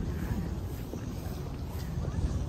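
Wind buffeting the microphone outdoors: an uneven low rumble that swells and eases, with faint steady background noise.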